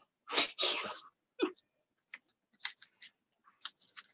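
A woman's breathy laugh, two short bursts of air in the first second, followed by faint light ticks and rustles of thin die-cut paper pieces being handled.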